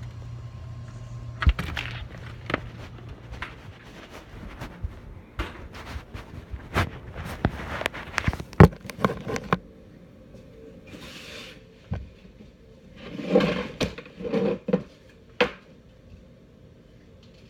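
Handling noise of a phone being carried: a dense run of sharp knocks, clicks and rubbing for the first ten seconds or so, then quieter, with a cluster of muffled knocks and rubbing near the end.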